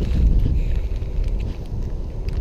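Wind buffeting the camera's microphone: a steady low rumble.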